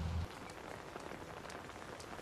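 Low background drone from a TV drama's soundtrack that cuts off abruptly at a scene change a moment in, leaving a faint steady hiss with a few soft ticks.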